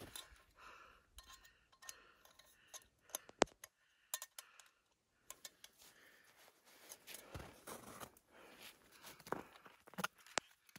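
Faint, scattered clicks and light taps from hands handling small camp gear on a rock: a stemmed glass and a fuel canister. The sharpest click comes about three and a half seconds in.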